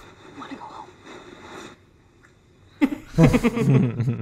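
Men laughing, soft and breathy at first, then a louder burst of laughter and speech starting about three seconds in.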